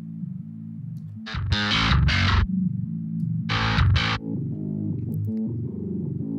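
Heavily distorted djent bass riff played back, its low notes shifting in pitch, heard while an EQ band works on the bass's unwanted low growl. Twice, a little over a second in and again near the middle, it swells into louder, brighter hits that reach from deep lows to a fizzy top.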